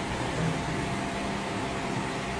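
Steady background hiss with a faint low hum, and no voice.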